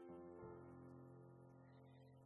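Soft grand piano chords ringing on and slowly fading, with a new low bass note struck about half a second in.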